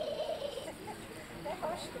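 Indistinct background voices mixed with warbling calls from poultry in the show hall's pens.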